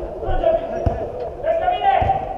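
Footballers calling out to each other during play, with a single sharp thud of the football about a second in and a louder call near the end.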